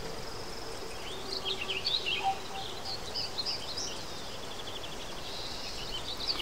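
Small birds chirping and twittering in the background, short quick calls in a busy stretch after about a second, then a fast run of ticking notes, over a faint steady hiss.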